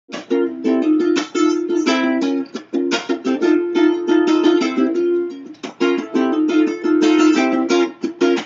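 Solo ukulele strummed in a brisk, rhythmic pattern with the chords changing, an instrumental intro with no voice.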